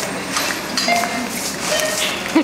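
Supermarket background noise: a steady murmur with indistinct distant voices and scattered small clicks and knocks.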